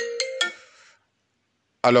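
The last notes of a short electronic chime melody, like a phone ringtone, a quick run of single pitched notes that stops about half a second in and fades out by one second. Then dead silence until a man's voice starts near the end.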